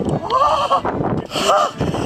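Two high-pitched excited whoops from a man's voice, about half a second in and again at about a second and a half, shouts of celebration at landing a big fish.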